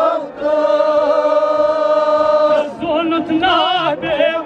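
Male reciter chanting a noha, a Shia mourning lament, into a microphone. He holds one long steady note for about two seconds, then breaks into a wavering, ornamented phrase near the end.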